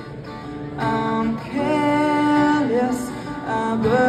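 A strummed acoustic guitar with a man singing long, held notes that slide between pitches; the voice comes in about a second in.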